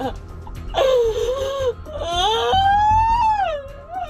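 Woman crying in drawn-out wailing sobs: one cry about a second in, then a long wail near the end that rises and then falls in pitch.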